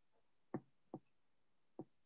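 Near silence, broken by three faint short clicks: two close together about half a second in, and a third near the end.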